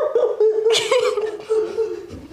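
Women laughing, in breaking chuckles with a breathy burst about a second in.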